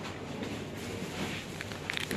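Soft crinkling of a plastic pastry wrapper being turned over in the hand, with a few short crackles near the end, over faint shop background noise.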